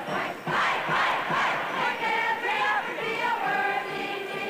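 A large group of voices singing a school song together, loud and loosely in unison, more shouted than polished. About halfway through, the voices settle into longer held notes.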